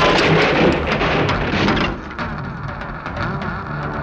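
Loud crash of breaking wood and falling debris lasting about two seconds, followed by softer scattered clatter.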